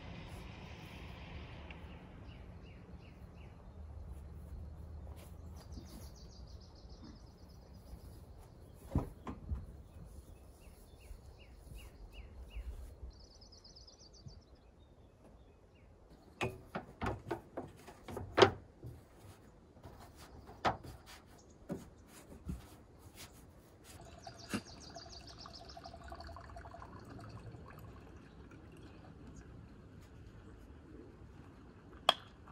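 Birds chirping and trilling over a steady outdoor background hum, with a run of sharp knocks and clunks about halfway through, the loudest of them a single hard knock.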